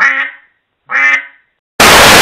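A duck quacking twice, two short calls about a second apart. Near the end, loud TV static noise cuts in suddenly.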